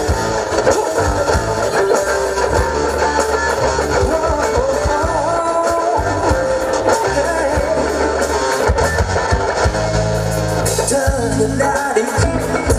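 A live band playing amplified music on stage: electric guitar to the fore over bass and drums, with a man singing.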